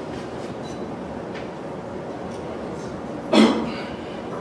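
A single loud cough about three and a half seconds in, over a steady hum of room noise.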